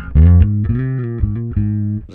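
Ibanez electric bass guitar playing a short phrase of about four plucked notes, the first sliding in pitch.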